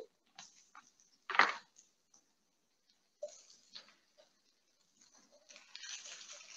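Faint handling noises: a few small clicks and one brief, louder noise about a second and a half in. Near the end a faint sizzle builds as the block of raw turkey mince goes into the hot pan of cooked onions.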